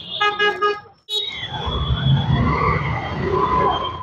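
Busy street traffic: a vehicle horn beeps three short times, then after a sudden break comes the steady low rumble of motorbike and scooter traffic.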